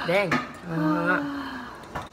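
A young woman's short exclaimed "oh", then a held, level "mmm" hum of about a second as she tastes the spicy noodles, followed by a verdict that they are good.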